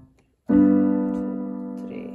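Piano: a two-handed chord struck about half a second in and held, slowly fading, one chord of a C–G–Am–F progression played one chord to a bar.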